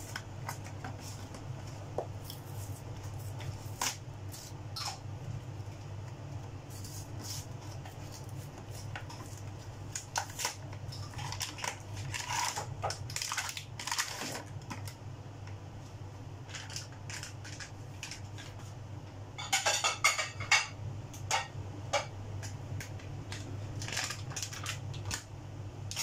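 Scattered kitchen clinks and clicks of utensils and dishes being handled, over a steady low hum, with a short burst of busier clatter about twenty seconds in.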